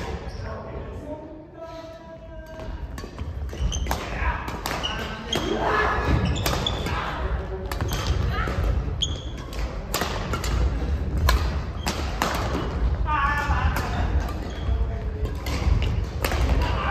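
Badminton rally: repeated sharp racket strikes on the shuttlecock and shoes squeaking and stamping on the court floor, with short shouts from the players.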